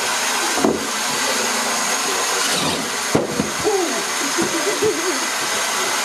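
Electric motors of a wheeled Power Cube shooter prototype, geared 10:1, spinning their wheels with a steady whir. Two sharp knocks come through it, about a second in and about three seconds in.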